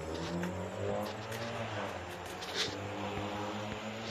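A motor vehicle's engine running nearby, a steady hum whose pitch drifts slightly up and down, with a few light handling knocks on the phone.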